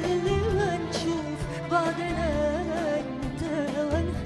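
A woman singing an Egyptian Arabic song live with an orchestra accompanying her, her voice carrying an ornamented melody with wavering held notes.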